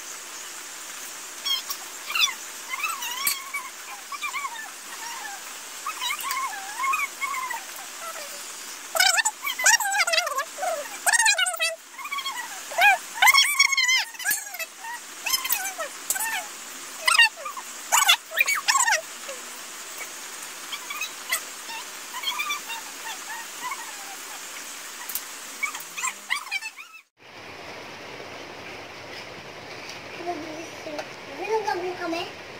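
A dog whimpering and whining in short, high, wavering cries that keep coming, with sharp clicks and scrapes from a spoon against a steel bowl through the middle. The whining stops abruptly near the end.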